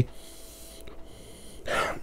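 A man sniffing the aroma of a glass of IPA. It is mostly quiet, with a short, sharp breath drawn in near the end.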